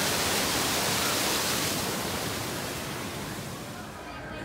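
Water rushing over a small rockwork waterfall, a steady hiss that slowly fades.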